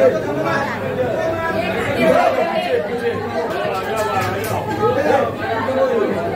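Crowd chatter: many people talking over one another around the shrine, with no single voice standing out.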